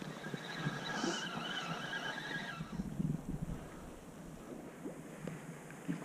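Faint whine of a size-4500 spinning reel being cranked to retrieve braided line, stopping about two and a half seconds in.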